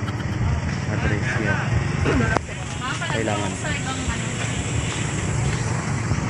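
Background chatter of several people talking at a distance, over a steady low rumble.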